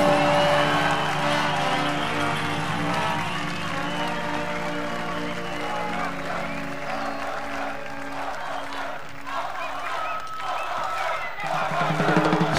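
A live brass band holds a final sustained chord that fades out over the first several seconds, while a festival crowd cheers and applauds. The next tune begins loudly right at the end.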